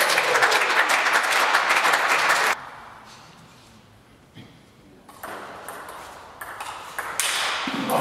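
Clapping in a sports hall for the first two and a half seconds. After a quiet pause come a few sharp ticks of a table tennis ball bouncing and being struck. Clapping and a shout start again near the end.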